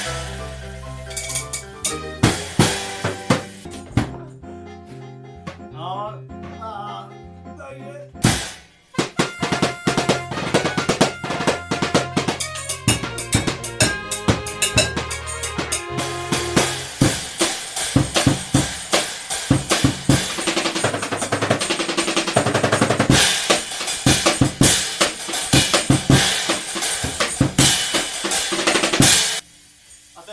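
A homemade drum kit made from plastic Mattoni bottles (bass drum, floor tom and snare) played in a fast beat along with a keyboard backing track. The drumming drops away briefly about eight seconds in, then comes back dense and steady and stops just before the end.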